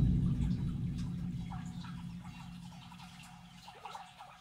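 Thin stream of water trickling along a narrow concrete ditch, with many small, irregular gurgling plinks. Beneath it a deep rumble fades steadily away.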